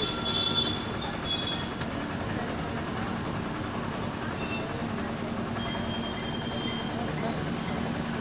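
Steady rumble of a passing vehicle with faint, drawn-out high squeals near the start and again in the second half, under faint background voices.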